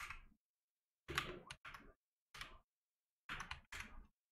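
Faint typing on a computer keyboard: about six short clusters of keystrokes with gaps between them.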